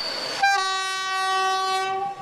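Train horn sounding one long, steady blast that starts about half a second in.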